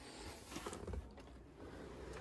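Faint handling noise of a Citroën Berlingo Multispace rear seat being tugged and lifted by hand: light knocks and rubbing, a little stronger about halfway through.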